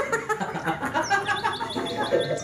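Bird chirping in a quick run of short, high, rising peeps.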